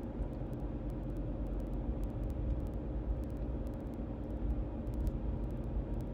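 Steady low rumble of a car being driven, heard from inside the cabin: engine and tyre noise.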